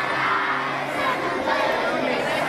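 A large group of schoolchildren reciting a prayer together in unison, many young voices at once.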